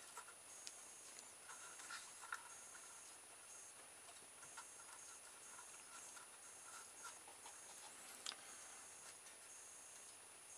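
Near silence with a few faint, scattered small clicks and rubs: small cardboard spacer discs being slid onto a straw axle against a cardboard body.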